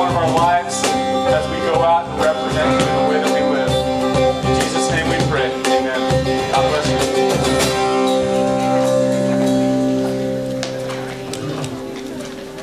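Live worship band with acoustic and electric guitars, bass and cajón playing a song. The beat stops about eight seconds in, leaving a held chord that fades toward the end: the close of the song.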